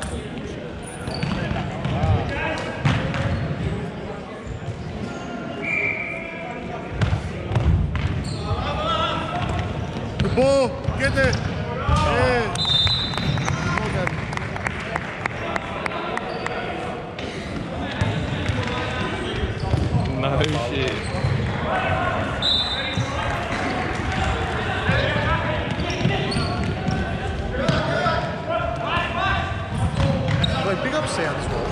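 Indoor soccer in a large hall with a hardwood floor: the ball is kicked and bounces on the wooden court, sneakers squeak in short bursts, and players call out, all with the echo of the hall.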